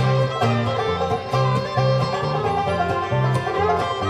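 Bluegrass string band playing an instrumental passage between vocal lines: banjo, mandolin, guitar, fiddle and dobro over an upright bass that alternates between two notes in a steady beat.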